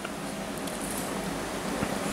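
Steady low background noise of a small room, with no distinct event.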